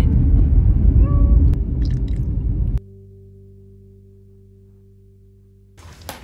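Low road rumble inside a moving car's cabin, cut off abruptly about three seconds in. A quiet held low musical chord follows and slowly fades.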